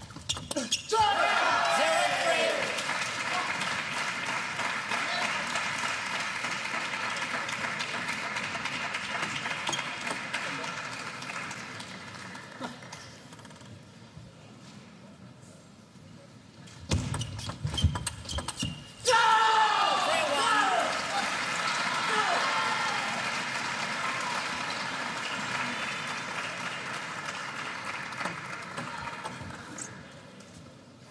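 Table tennis ball clicking between bats and table in short rallies, twice. Each rally is followed by an arena crowd cheering and shouting, about a second in and again about nineteen seconds in, with the cheering slowly dying away each time.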